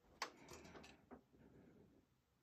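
Faint handling noise as a metal-grilled desk fan is turned by hand: a sharp click about a quarter second in, soft rustling, and a second click just after a second.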